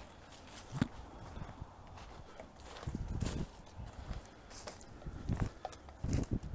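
Footsteps through dry fallen leaves on a forest floor: a few uneven steps, the loudest in short clusters about a second in, around the middle and near the end.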